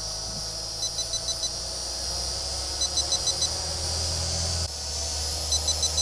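Low-battery warning from the Mengtuo M9955 drone's controller: groups of about four short high beeps, repeating about every two seconds. Under it runs the steady whir of the drone hovering overhead.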